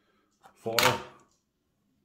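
A clear plastic coin capsule dropped into a clear plastic coin tube, landing on the stack below with one short click.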